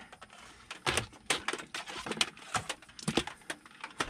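Bundled wires and their plastic connectors being handled and pulled across the floor carpet, giving a run of irregular light clicks and rustles.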